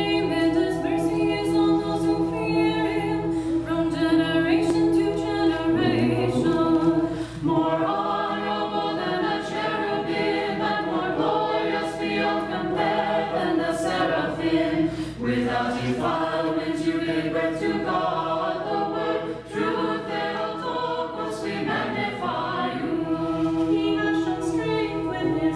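Small mixed choir of men and women singing Orthodox liturgical music a cappella in several parts, with one note held steadily beneath the moving voices and short breaks between phrases.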